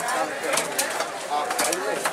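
A large fish knife chopping white snapper into chunks on a wooden stump block: several sharp knocks, irregularly spaced, over voices and birds cooing in the background.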